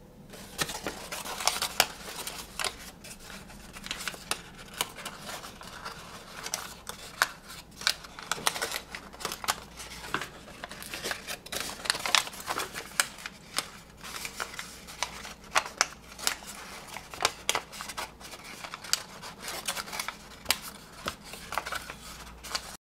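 Pre-creased sheet of origami paper being folded and pinched by hand into a tessellation, with many irregular sharp crackles and rustles as the creases are pressed and pushed into shape.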